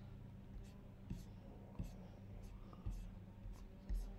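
Faint clicks of a computer mouse, a few spaced about a second apart, over a low steady hum.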